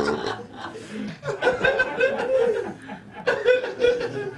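Several people chuckling and laughing together, with a few spoken sounds mixed in.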